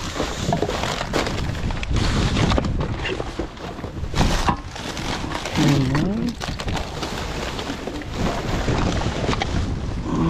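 Plastic bin bags and food packaging rustling and crinkling as gloved hands dig through a wheelie bin, with wind buffeting the microphone. A short vocal sound about six seconds in.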